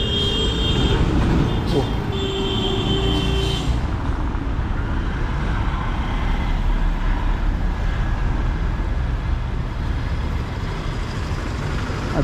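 Road traffic passing at a highway junction, buses and cars giving a steady rumble of engines and tyres. A vehicle horn sounds twice near the start, the first blast about a second long and the second about a second and a half.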